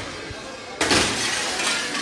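Window glass being smashed out in a demolition: one sudden loud crash a little under a second in, with breaking glass trailing off for about a second.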